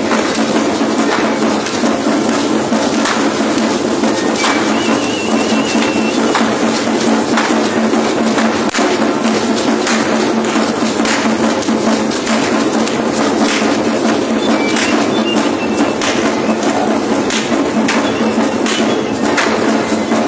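Music of a processing folk-dance troupe: dense percussion with many sharp rattling and tapping strokes, loud and continuous throughout.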